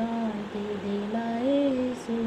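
A woman singing a Hindi Christian devotional song solo and unaccompanied, holding long notes that glide from one pitch to the next.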